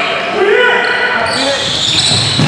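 Basketball game sounds in a gym: a ball bouncing on the court floor amid players' voices calling out, echoing in the hall.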